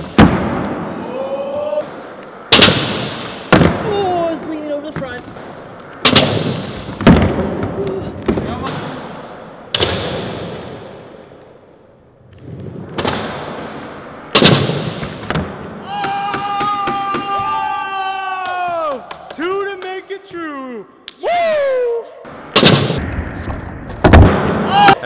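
Skateboard tricks on smooth concrete in a large echoing hall: about nine sharp pops and clacks from the board's tail snapping and landing, with the wheels rolling between them. Around two-thirds through come long drawn-out yells that fall in pitch, then another board pop near the end.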